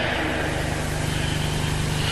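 A steady low hum with a faint hiss underneath, unchanging through a pause in the speech.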